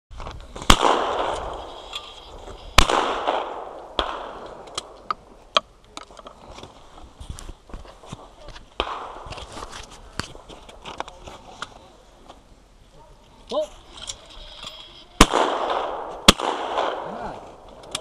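Shotgun firing at clay targets in two pairs: two shots about two seconds apart near the start, then two more about a second apart near the end, each with a long echoing tail.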